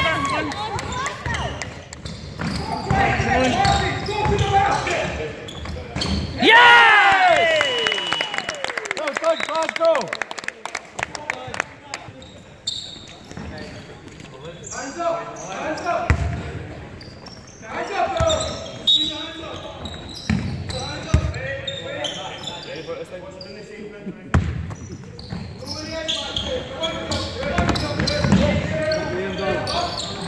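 Basketball game sounds in a sports hall: a ball bouncing on the wooden court, players' feet on the floor and voices calling. About six and a half seconds in there is a sharp high squeal that falls in pitch.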